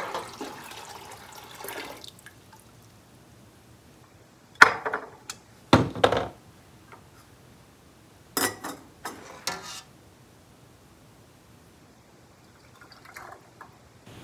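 Water poured out of a glass quart canning jar into a stainless steel stockpot, fading out after about two seconds. A few sharp clinks and knocks of glass and metal follow as the jar is set down and a metal canning funnel is handled.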